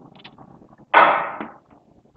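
Chalk writing on a blackboard, with faint light taps and scratches. About a second in comes a sudden, louder scraping noise that fades within half a second.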